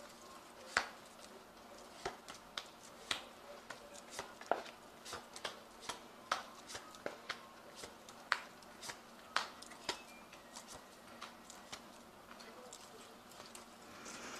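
Tarot cards being shuffled and handled, heard as a quiet, irregular run of sharp clicks and snaps, about two a second.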